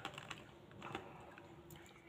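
Faint, irregular light clicks and smacks of a small child's mouth eating an ice cream bar, between bites.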